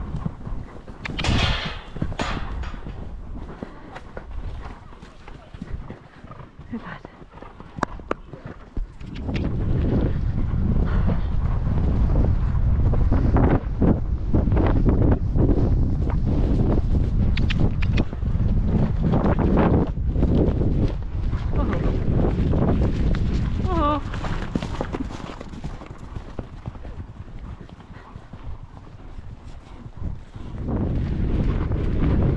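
A horse's hoofbeats as it canters over grass. From about nine seconds in, a loud rush of wind on the helmet-camera microphone covers them as the horse picks up speed, easing off near the end.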